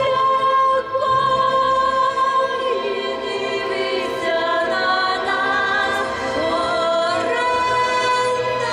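A woman singing a slow song into a microphone over an amplified sound system, holding long notes. Choir-like backing music continues underneath, and it carries on through a short break in her singing midway.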